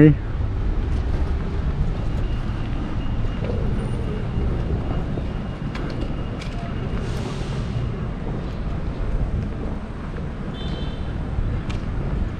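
Steady low rumble of outdoor city ambience with traffic noise, and a few faint clicks and a short hiss partway through.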